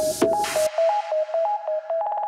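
Hard techno: the pounding kick and hi-hats cut out about a third of the way in, leaving a two-note synth riff with a fading noise sweep. A fast stuttering roll starts near the end, building a breakdown back toward the drop.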